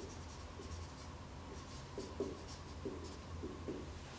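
Marker writing on a whiteboard: a string of short, separate pen strokes as a word is written out, over a steady low hum.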